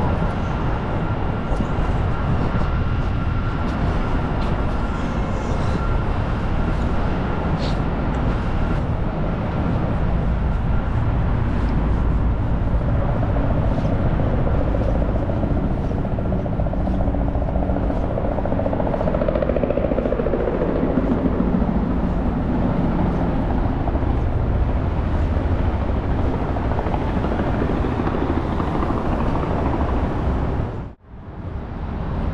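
Steady city traffic rumble under an elevated highway, with a thin steady whine for the first several seconds. A helicopter's engine and rotor swell and fade through the middle of the stretch.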